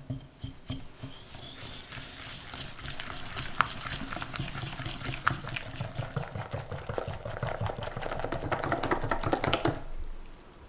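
A silicone whisk beating egg yolks and sugar in a glass bowl. It starts with a few separate taps, then rapid wet whisking strokes that grow louder near the end and stop suddenly, as the mixture turns pale and thick.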